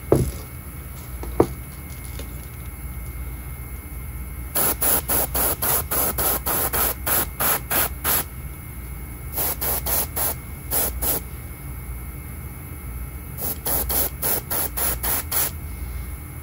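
Airbrush spraying paint in short, rapid bursts, about three a second, in three runs, laying a broken pattern of colour on a lure. Two sharp knocks come in the first second and a half.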